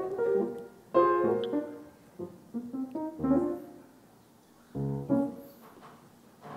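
Piano playing light background music in a few short phrases of struck notes and chords that ring and fade, with a brief lull before the last phrase.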